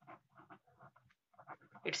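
A ballpoint pen writing on paper: a run of short, soft strokes, a few a second, as digits and letters are written. A voice starts near the end.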